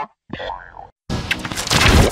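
Heavily distorted cartoon logo sound effects with music, including a boing. A short sound comes about a third of a second in, then a loud noisy burst from about a second in that is loudest near the end.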